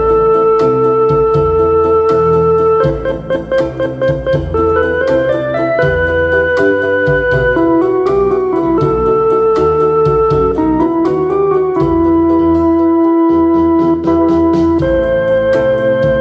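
Slow rock instrumental played on a digital arranger keyboard: long held melody notes stepping up and down over a bass line, with a steady drum beat from the keyboard's built-in accompaniment style.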